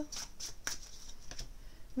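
Oracle cards being handled: a card drawn from the deck and laid on the table, giving a few soft card clicks and slides, the sharpest a little after the half-second mark.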